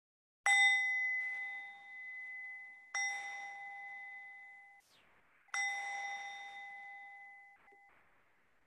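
A small meditation bell struck three times, about two and a half seconds apart, each stroke ringing with a clear high tone and fading away, marking the close of a meditation. The second ring cuts off abruptly.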